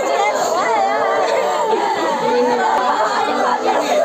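Several mourners wailing and sobbing at once in grief over the dead, loud overlapping voices that rise and fall, with lamenting words mixed in.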